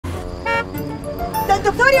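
A car horn gives a brief toot about half a second in, over steady background music. A man's raised voice follows near the end.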